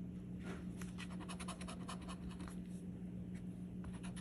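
A metal coin scraping the coating off a scratch-off lottery ticket in many short, quick strokes, over a low steady hum.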